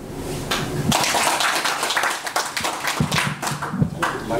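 A small group of people applauding, a scattered round of hand claps that starts about half a second in and keeps going.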